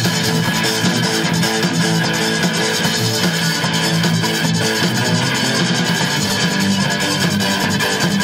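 Live electric rock band playing loud and steady: electric guitars, bass guitar, drum kit and keyboard together, with fast, even drum strokes.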